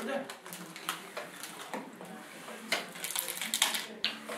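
Doritos bag crinkling and tortilla chips being crushed in a hand, with crumbs falling onto a tabletop: scattered crackly clicks that come thickest in the last second or so.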